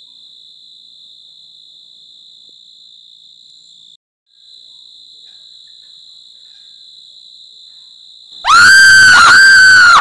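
Night-time cricket chorus: a steady, faint high-pitched trill that cuts out briefly about four seconds in. Near the end, a sudden, very loud, piercing high-pitched shriek breaks in, rising and falling twice.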